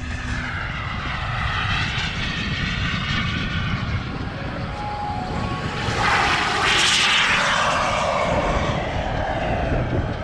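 Turbine-powered RC model jet flying past: its jet noise swells to loudest about seven seconds in, then drops in pitch as it moves away. A low rumble runs underneath.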